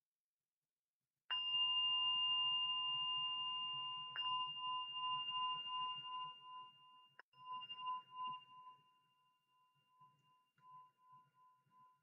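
Meditation bell struck three times, about three seconds apart. Each strike rings with a clear tone that pulses as it fades. It signals the end of a sitting meditation period.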